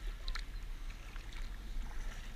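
Kayak paddles stroking through calm water, with small splashes and drips, over a low steady rumble.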